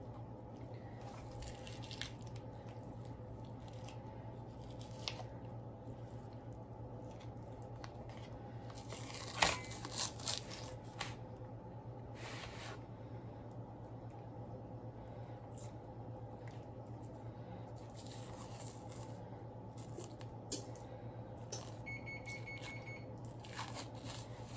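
Membrane being peeled by hand off a raw rack of ribs on a metal tray: quiet tearing and squishing with small clicks, one louder knock about nine and a half seconds in, over a steady low hum. Near the end an electric oven beeps, going off as it reaches its set temperature.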